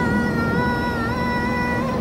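Electric commuter train's traction motor whine heard inside the carriage: several steady high tones that rise slightly and then hold over the low rumble of the running train, dying away near the end.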